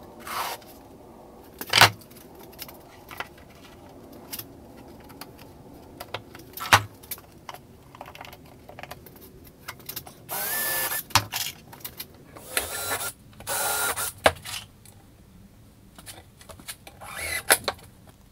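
Workshop assembly sounds: sharp knocks of wooden panels set down and handled on the bench, and four short bursts of a cordless drill-driver running, each under a second, two of them close together in the second half.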